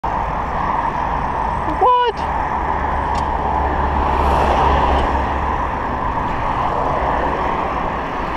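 Steady rush of wind and road noise on the microphone of a moving bicycle, with motor traffic running alongside. About two seconds in there is a brief high-pitched cry.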